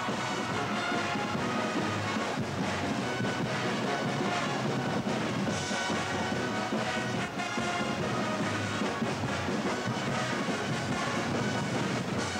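A brass band with drums playing an upbeat tune without a break.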